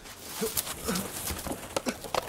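Clay pots and baskets clattering onto a stone floor as a person falls among them: a quick, irregular jumble of knocks and clacks.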